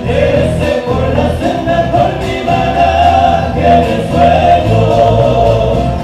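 Live Argentine folk band playing: voices singing together over acoustic guitars and drums.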